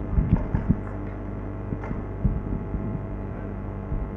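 Room tone of a lecture hall through the talk's microphone: a steady low electrical hum, with a few soft knocks and taps, most of them in the first second and a couple more just after two seconds.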